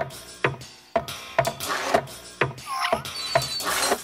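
Cartoon sound effects of an animated desk lamp hopping: a sharp knock about twice a second, with swishes between them and short gliding squeaks near the end, mixed with music.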